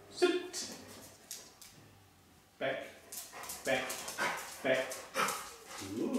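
A black Labrador whining and vocalizing: one short call at the start, then a string of short pitched whines and grumbles from about two and a half seconds in.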